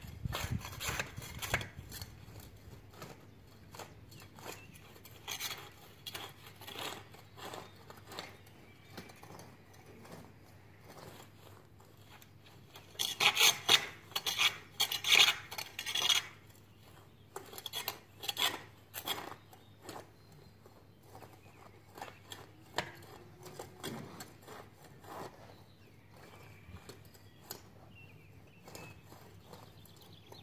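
Garden hoe scraping and chopping through loose soil and weeds in repeated, irregular strokes, with a louder run of strokes about halfway through.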